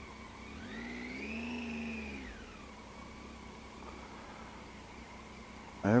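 Passing traffic at a junction: a vehicle engine's pitch rises and then falls over about two seconds, over a low steady engine hum.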